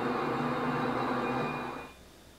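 Sustained eerie drone with a steady hiss from a creepy video intro, fading out near the end.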